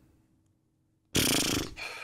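After about a second of silence, a person lets out a short, breathy burst of laughter that trails off.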